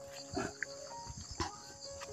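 A steady, high insect chorus, with a few short soft rustles or knocks.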